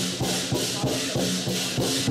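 Lion dance percussion: a Chinese lion drum beating a steady rhythm with crashing hand cymbals and a ringing gong.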